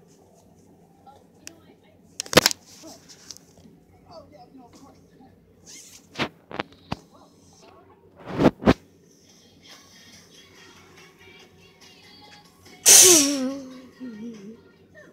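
Film soundtrack from a television, faint dialogue and music, broken by several sharp clicks and knocks. Near the end comes a loud burst followed by a pitched, voice-like sound that falls in pitch.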